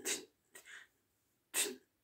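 A person's short, sharp breath, noisy and reaching high up, about a second and a half in, in an otherwise quiet pause; a fainter breath comes about half a second in.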